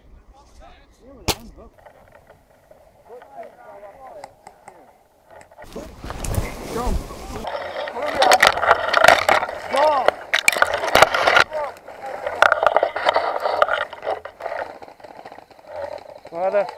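Airsoft gunfire: one sharp shot about a second in, then, over the second half, repeated shots mixed with shouted voices that are not making out clear words.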